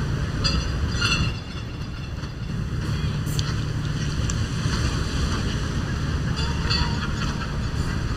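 Wind buffeting the microphone, a steady low rumble that eases off for about a second around a second and a half in.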